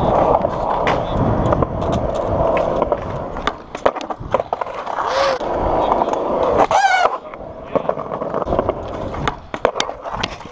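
Skateboard wheels rolling loudly over the concrete of a skatepark bowl, broken by sharp clacks and knocks of the board. The rolling is heaviest in the first few seconds and eases after the middle.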